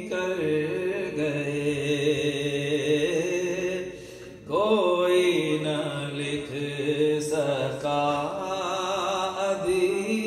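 A man sings an Urdu devotional kalam solo into a microphone, on long held notes with wavering ornaments. About four seconds in he pauses briefly for breath, then comes back in on a rising note.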